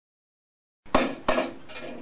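A long alignment straight-edge bar being handled on a tabletop, knocking against the table and the other bars: two sharp knocks with a short ring, starting about a second in, then fainter rattling.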